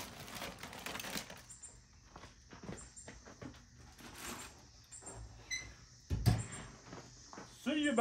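Aluminium foil crinkling as a foil-wrapped piglet is lifted from a metal tray, then a single heavy thud about six seconds in as the steel lid of a barrel offset smoker is shut.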